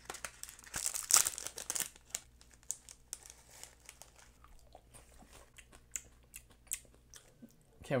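Snack packaging being opened: a cardboard box and a small plastic bag crinkling in the hands. A dense rustle comes about a second in, followed by scattered crinkles and clicks.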